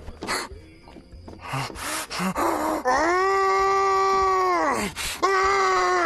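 A drawn-out vocal wail held on one pitch for about two seconds and sliding down at its end, then a second, shorter one that also falls. A few sharp knocks come before it, in the first two seconds.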